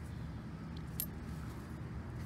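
Faint rustle of a hand working through loose, damp soil, with one small sharp click about a second in, over a steady low background rumble.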